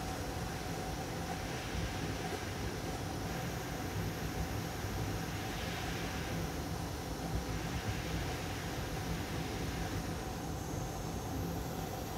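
Hot air rework station blowing a steady hiss of air with a faint whine, heating a small surface-mount chip on a graphics card until its solder melts for removal.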